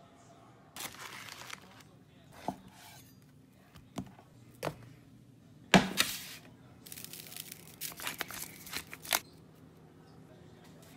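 Kitchen handling noises on a metal sheet pan. A single loud knock comes about six seconds in, as a ball of ground beef is set down on the pan. Then, for about two seconds, a run of crackling clicks comes from a pepper grinder seasoning it.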